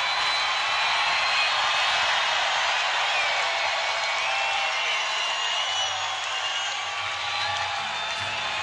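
Large open-air crowd cheering, whooping and whistling as a heavy metal song ends, with a steady roar of many voices and clapping and a few high whistles rising and falling over it.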